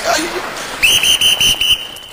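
A sports whistle blown in one long, shrill blast with a fluttering trill, starting a little under a second in.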